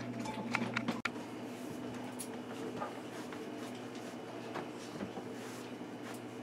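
Quiet room tone with a steady low hum, broken by a few small clicks in the first second, a sharper click about a second in, and faint ticks later on.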